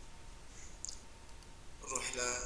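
A computer mouse button clicking, a few short faint clicks about a second in, over low background hiss.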